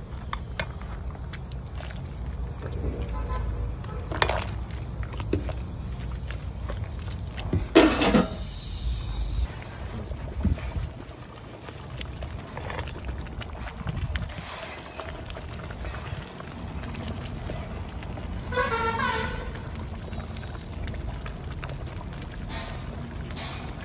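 A long metal ladle stirring noodles in a large aluminium pot, with scattered light clinks of metal on metal, over a low rumble that drops away about nine seconds in. A vehicle horn toots briefly in the background near the end.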